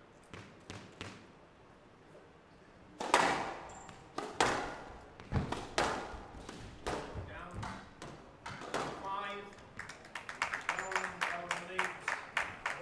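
A squash ball is bounced lightly a few times, then a rally: sharp strikes of racket on ball and ball off the glass walls, ringing in the hall. Near the end the crowd breaks into applause as the game is won.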